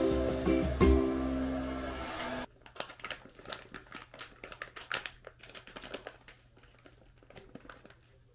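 Light plucked-string background music that cuts off abruptly about two and a half seconds in, followed by quieter irregular crinkling and small clicks of a plastic snack pouch being handled as a treat is taken out.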